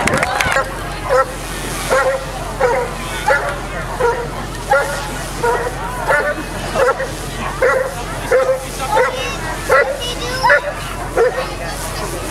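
A Belgian Malinois police dog barking over and over while straining on a leash, about one sharp bark every two-thirds of a second.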